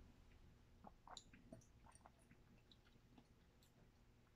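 Near silence, with a few faint wet mouth clicks about a second in as wine is held and worked around the mouth while tasting.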